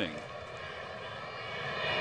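Steady background sound of a ballpark crowd in a television baseball broadcast, with the announcer's voice ending just at the start.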